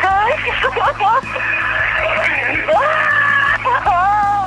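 A racing driver screaming and sobbing with joy over team radio after winning, in long wavering wails, his voice thin and narrow as it comes through the radio. Music plays underneath.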